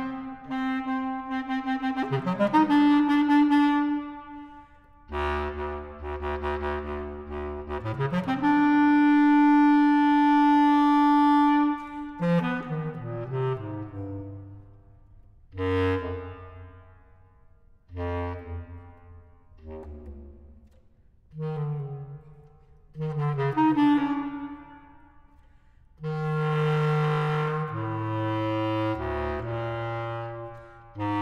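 Bass clarinet playing: low notes that slide up into long held tones, the longest held for about three seconds near the middle, then shorter phrases broken by brief pauses.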